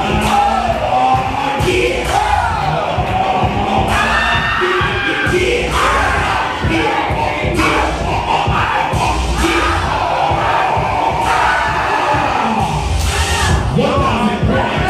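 Loud dance music from a DJ with a heavy bass beat, with a crowd shouting and cheering over it as dancers battle.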